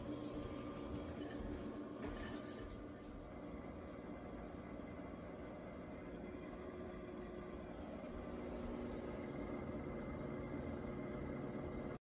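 Harman pellet stove running as it starts up: a steady, quiet mechanical hum from its motors, with a few faint ticks in the first few seconds.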